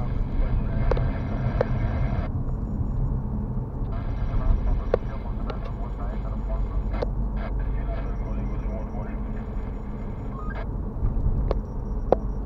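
Road noise inside a moving car: a steady low rumble of engine and tyres, with several short sharp clicks or knocks scattered through it.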